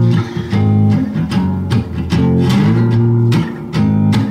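Guitar strummed in a steady rhythm, about two to three strokes a second, with a chord change about two seconds in: the instrumental opening of a song played live.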